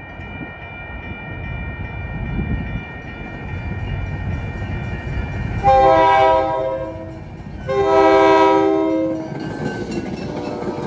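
MBTA commuter rail train approaching with a rising rumble, sounding its horn twice: a short blast about six seconds in, then a longer one. The coaches then rumble and clatter past close by.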